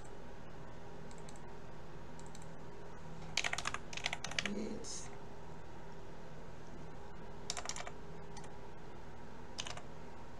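Computer keyboard being typed on in short bursts: a quick run of keystrokes about three to four seconds in, then a few more keystrokes near the end, over a low steady hum.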